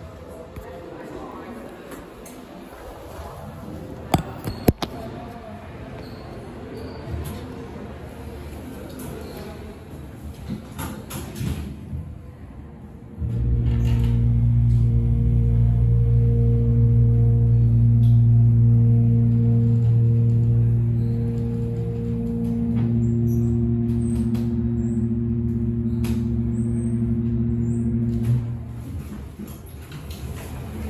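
Hydraulic elevator machinery running during travel: a steady, loud low hum with evenly spaced overtones that starts abruptly about halfway through, dips slightly, and cuts off suddenly near the end. Before it, mall background with two sharp clicks about four seconds in.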